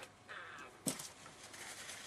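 Faint handling sounds: a soft rustle, then one light knock just under a second in.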